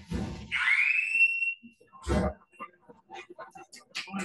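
A short laugh, then a high-pitched squeal that rises in pitch and holds for about a second before fading. A single thump follows a little after two seconds in.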